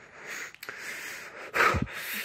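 A man breathing audibly in and out several times, each breath a short swell. The loudest, about one and a half seconds in, is an exhale with a little voice in it.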